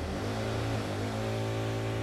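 A steady mechanical hum over an even hiss.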